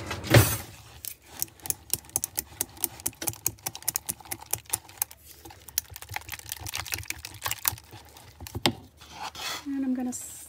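A whisk beating a wet banana bread mixture in a plastic measuring jug, ticking quickly and unevenly against the jug's sides, with one louder knock about half a second in.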